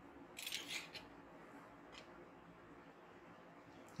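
Faint handling noise of hands picking up small watch parts on a silicone repair mat: a quick cluster of crisp clicks about half a second in and one fainter click near two seconds, over quiet room tone.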